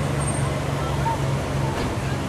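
Steady road traffic rumble, an even low drone with no distinct events.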